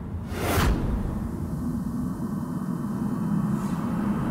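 A swishing whoosh sound effect about half a second in, then a low, steady music drone underneath.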